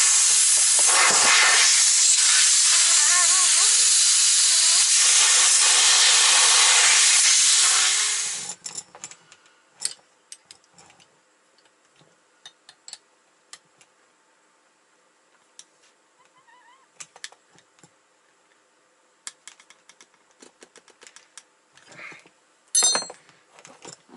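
Compressed air blasting out of a semi truck's cut seat air line, a loud steady hiss for about eight seconds that fades out as the air system bleeds down. Afterwards there are small clicks of fittings and tools being handled, with a short metallic clatter near the end.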